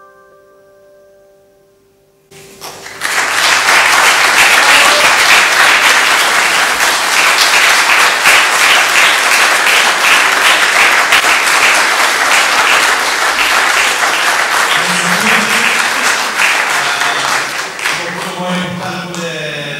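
The last note of a Giannini grand piano fades away, then about two seconds in an audience breaks into loud, sustained applause that eases slightly near the end.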